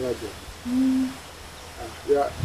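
A woman speaking briefly in a local language, with a low drawn-out vowel held for about half a second in the middle.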